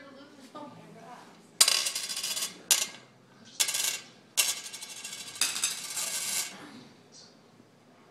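A hand tapping and rubbing on a glass tabletop: five sharp-starting, rattly clinking bursts, the last running for about a second.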